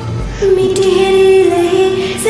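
Singing over a karaoke backing track: a voice holds one long, steady note that starts about half a second in.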